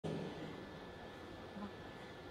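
Faint arena room tone: a steady hum with a thin high whine over a background hiss.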